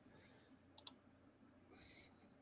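Near silence with room tone, broken by two quick, faint clicks a little under a second in.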